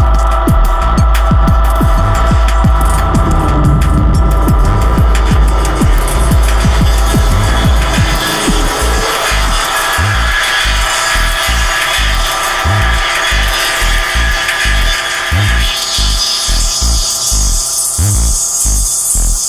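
Electronic music from a Eurorack modular synthesizer: a sustained deep bass with steady held tones above it, the bass breaking into an evenly repeating pulse about halfway through, while a noisy hiss-like texture swells brighter near the end.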